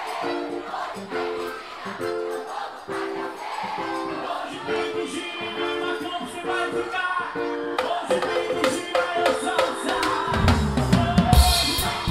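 Live forró band music: chords played in a short, repeating rhythm over drums and cymbals. About ten seconds in, the electric bass and kick drum come in heavily and the music gets louder.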